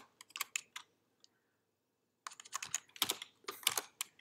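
Typing on a computer keyboard: two runs of keystrokes with a pause of about a second and a half between them.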